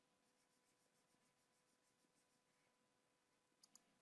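Near silence: faint room tone with a thin steady hum, and two quick faint clicks near the end, typical of computer input clicks at a desk.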